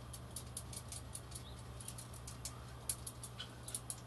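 Many light, irregular clicks, several a second, from the loose, really rattly fire button of an 18650 box mod being pressed or rattled in the hand.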